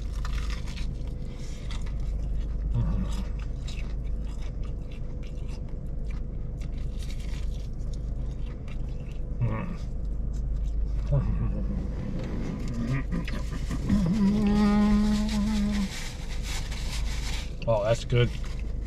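A man biting and chewing crispy fried chicken wings, with a drawn-out hummed "mmm" of enjoyment about fourteen seconds in, over a steady low rumble.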